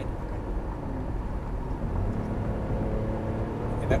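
Cadillac SRX heard from inside the cabin while accelerating hard from about 50 to 60 mph: a steady low engine and road rumble, with tyre and wind noise.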